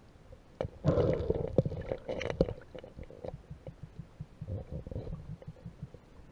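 Underwater noise heard through a camera housing: a low, gurgling rumble that swells about a second in and again briefly near the end, with many small clicks and knocks.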